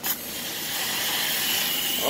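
Compressed air hissing out of a Hitachi NV83A2 pneumatic coil framing nailer as the air hose is coupled. It starts with a sudden burst, then holds steady with a thin whistle in it: the nailer is leaking air.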